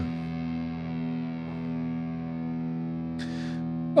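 Distorted electric guitar chord held and ringing out steadily, slowly fading: the last chord of a thrash/hardcore punk song.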